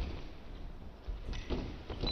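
Fencers' shoes thudding on the piste: a few dull stamps of footwork as they close in and one lunges.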